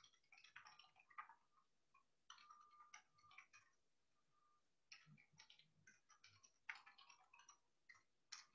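Faint typing on a computer keyboard: quick runs of key clicks in several bursts, with a pause of about a second in the middle.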